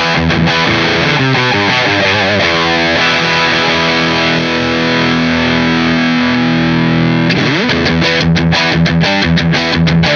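Vola Vasti KJM J2 electric guitar on its bridge humbucker, played through an Orange Rockerverb 100 amp with distortion. A choppy riff with wavering notes gives way to a long sustained chord from about three to seven seconds in, then a quick pitch glide and more short, choppy riffing.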